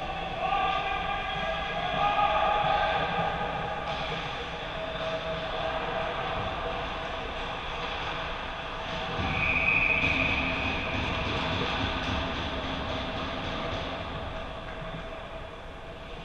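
Ice hockey rink ambience: a steady hum with several held tones and the general noise of play in a large hall. A brief high, held tone sounds about ten seconds in.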